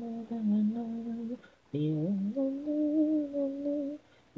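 A lone voice humming a wordless melody a cappella in long held notes. There is a short pause about a second and a half in, then the voice steps up into the next sustained note.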